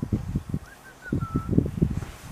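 A bird calls a quick series of short chirps followed by one longer, even note, over a low, uneven rumble.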